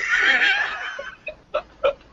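A person laughing, the laugh fading after about a second into a few short separate bursts of laughter near the end.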